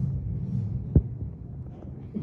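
A low, steady hum, with a single sharp thump about a second in; the hum eases off afterwards.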